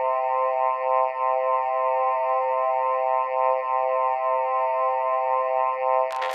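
Electronic music: a sustained synthesizer chord with a fast, even shimmer, no drums or bass.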